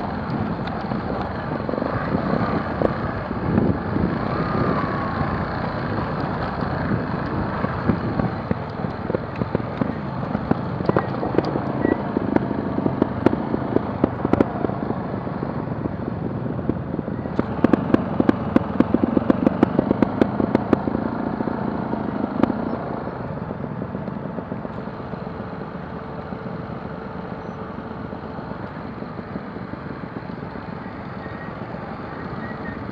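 Trial motorcycle engines running at low speed on a rough off-road descent. A little past halfway comes a few seconds of rapid popping, and the sound eases slightly near the end.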